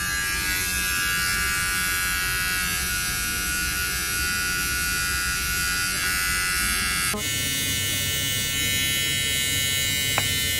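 Rechargeable electric eyebrow trimmer running with a steady buzz while held to the eyebrow, its tone shifting slightly about seven seconds in.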